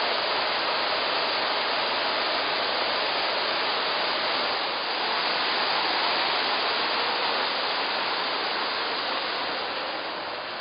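Steady rushing of falling water, an even hiss-like noise with no breaks, easing off slightly near the end.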